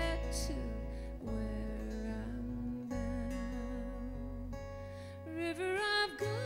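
Live folk song: a strummed acoustic guitar over an electric bass line, with a woman's voice singing held notes with vibrato.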